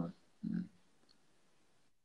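A short voiced sound lasting about a quarter of a second, about half a second in. It sounds like a brief murmur or 'mm' from one of the speakers. After it comes near silence, which cuts out completely for a moment near the end, like the gating on a video-call line.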